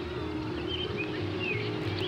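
Soft background music with long, steady held notes, and a few short, high chirps over it.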